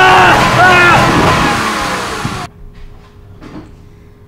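A car accelerating with a loud engine and road noise while men yell in short repeated cries over it. The sound cuts off suddenly about two and a half seconds in.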